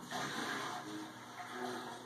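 Television playing faintly: a short rushing noise for just under a second, then a few soft held tones like quiet music.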